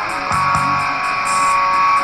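Glam-metal rock song: distorted electric guitar holding one long note over a steady drum beat and bass.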